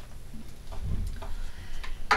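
Acoustic guitar being handled and brought into playing position: a few light clicks and knocks against its wooden body, over low bumps.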